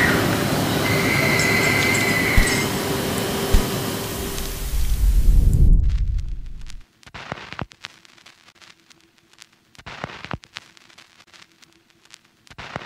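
Loud grinding, rumbling machinery noise with high-pitched squeals, swelling and then cutting off about six seconds in. After that comes a much quieter stretch of scattered clicks over a faint hum.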